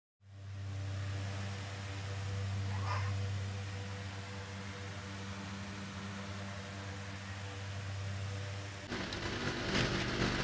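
A steady low hum with a faint hiss, becoming rougher and noisier near the end.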